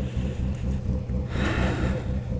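Motorcycle engine running at low speed as the bike rolls slowly, a steady low rumble, with a short breathy exhale near the end.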